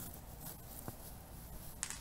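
Faint rustle of fingers pushing through dry straw mulch into garden soil, with a small click about a second in and a short crackle near the end.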